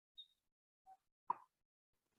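Near silence with a few faint, very short sounds, the loudest a single brief plop a little over a second in.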